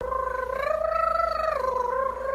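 A small dog's long, drawn-out whining howl: one held note that rises a little, then drops about a second and a half in.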